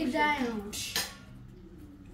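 A drinking cup being handled as its plastic wrapper comes off: a brief rustle, then a single sharp click about a second in.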